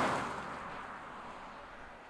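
Mercedes GLA diesel SUV driving past, its rushing road noise fading steadily as it moves away.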